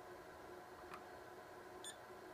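Near silence, then a short, faint high beep near the end from a Keysight U1273A multimeter in diode test, as the probes find a forward-biased junction of a bridge rectifier reading about 0.56 V, the sign of a good diode. A faint tick comes about a second in.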